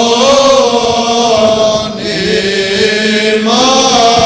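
Byzantine chant sung by male voices: a melody line that bends and holds over a steady low drone (the ison), with a short break for breath about halfway through and another near the end.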